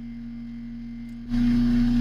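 Electric motor spinning a turntable, running with a steady low hum; a bit over a second in the sound gets clearly louder, with a whirring hiss added to the hum.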